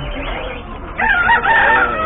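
Rooster crowing once, starting about a second in, with a wavering opening and a long held final note.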